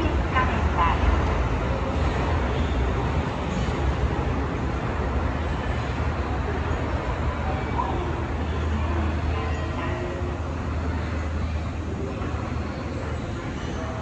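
Steady low rumble of a long subway-station escalator running as it carries riders down, with a voice heard briefly near the start.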